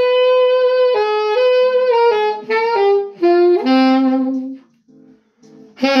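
Saxophone playing a blues phrase in C minor: long held notes, then a run of notes stepping down to a low held note, a pause of about a second, and a new phrase starting near the end.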